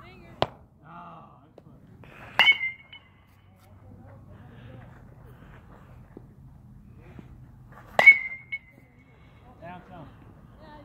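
Two hits of a metal youth baseball bat on a pitched ball, each a sharp ping with a brief ringing tone, about two and a half seconds in and again about eight seconds in. A fainter click comes just before the first.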